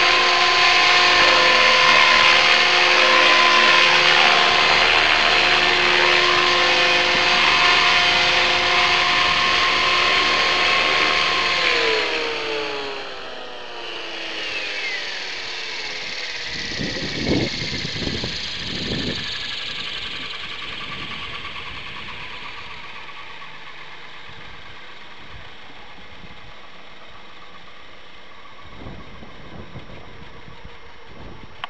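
HK500GT electric RC helicopter, its motor and rotors whining steadily in a hover at a head speed of about 2630 rpm. About twelve seconds in, the throttle is cut and the whine falls in pitch as the rotors spool down, fading to a faint whir.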